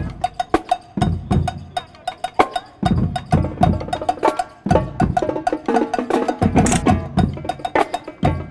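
Drumline playing marching snare drums: a fast run of sharp stick strokes, with heavier low drum hits every second or two.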